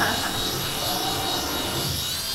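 Steady high buzz of a tiny remote-controlled flying toy's electric rotors as it hovers overhead.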